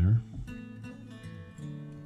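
Soft background music of plucked acoustic guitar, held notes changing pitch every half second or so.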